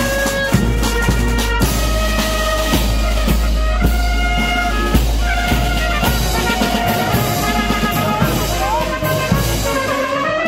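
Marching band playing a tune on the move: clarinets, trumpets and sousaphones over a regular beat of snare and bass drum, with a steady low rumble underneath.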